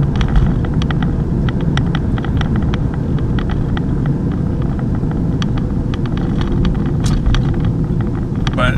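Car driving on a city street, heard inside the cabin: a steady low rumble of engine and tyre noise, with frequent light clicks and rattles throughout.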